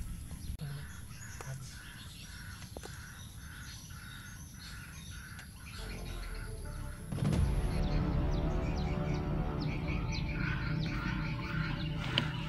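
A bird calling over and over in short, evenly spaced notes, about two to three a second. About seven seconds in, louder background music comes in over it.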